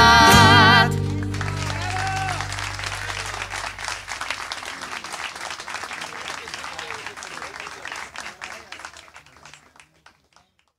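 A song ends about a second in on a held, wavering sung note over the band. An audience then applauds, with a few voices calling out, and the applause slowly fades away.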